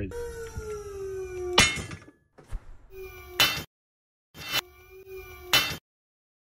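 A steady whine from the pull-test rig under load, falling slightly in pitch, ends in a sharp bang as a 7/16 bolt shears off under a tensile pull. Three more sharp bangs follow over the next four seconds, with brief silent gaps between them.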